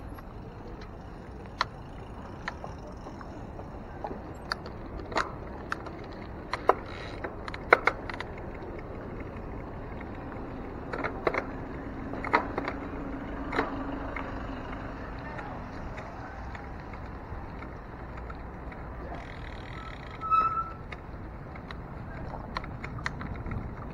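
Bicycle being ridden on pavement: a steady rush of tyre and wind noise on the camera, with scattered sharp clicks and rattles from the bike, a low steady hum in the middle, and a brief louder burst near the end.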